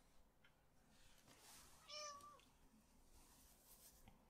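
Near silence with faint strokes of a paintbrush on paper, broken about two seconds in by a single short, high-pitched animal call that dips in pitch at its end.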